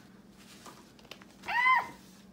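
A woman's short, high-pitched squeal about one and a half seconds in, rising and then falling in pitch: a startled reaction to a spider on the table.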